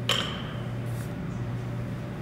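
Loaded barbell giving one sharp metallic clink with a short ring as it is pulled off the floor at the start of a deadlift, the plates and sleeve knocking together. A steady low hum runs underneath.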